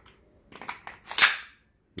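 KJ Works CZ P-09 gas airsoft pistol being handled: a few light clicks, then one sharp snap a little over a second in.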